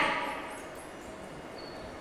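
Quiet, even studio room tone following the end of a short shouted command, with no distinct event standing out.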